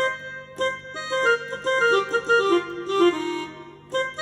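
Yamaha PSR-E473 electronic keyboard playing a quick run of single notes on the F pentatonic scale over a held chord. The run steps downward in pitch toward the end, with chords struck about half a second in and again at the close.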